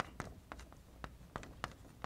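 Chalk writing on a blackboard: a quick, uneven series of short taps and strokes as words are written.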